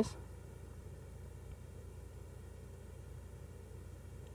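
Faint room tone: a steady low hum and light hiss from the recording microphone, with one faint tick about a second and a half in.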